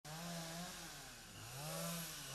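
A motor engine running at varying speed, its pitch dropping about a second in and climbing back up.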